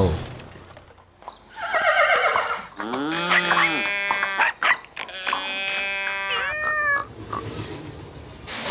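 Cartoon farm animals calling one after another: a string of short pitched calls, some arching up and down in pitch.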